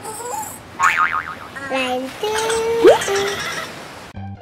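Cartoon sound effects: a character's short, high vocal noises about a second in, then a few held tones and a quick upward boing near three seconds in, the loudest moment.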